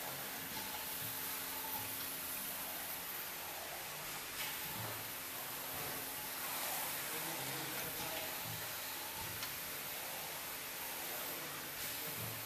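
Ever-Bright S-900DF flatbed screen printing machine running: a steady hiss with a few faint clicks spaced several seconds apart.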